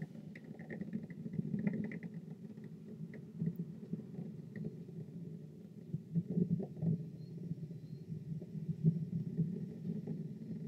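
Low, uneven rumble of the Space Shuttle's launch: its two solid rocket boosters and three main engines firing together during ascent.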